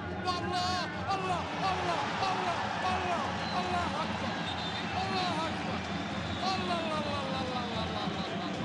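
Excited voices shouting and cheering over steady stadium crowd noise, in reaction to a goal.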